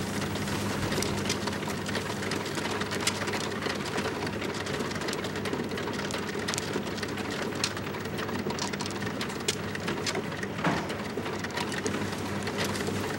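Mahjong tiles clicking as they are drawn from the wall and set down or discarded on the table: scattered light clicks, a few sharper ones, over a steady low hum and hiss.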